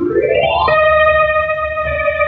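Opening theme music of a 1940s radio drama: a pitched tone sweeps upward for well under a second, then settles into a held, sustained chord.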